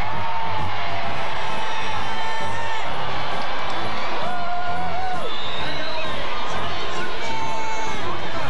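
Large crowd cheering and whooping, many children's voices shouting among them, with music playing underneath.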